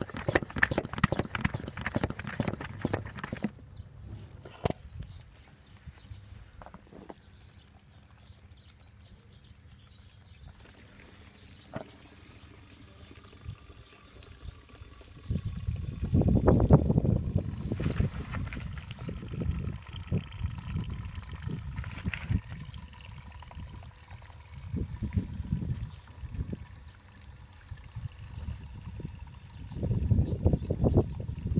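Hand-operated vacuum pump of a Pela 2000 oil extractor being pumped in fast, even strokes, about four clicks a second, stopping a few seconds in. From about halfway, gusts of wind rumble on the microphone.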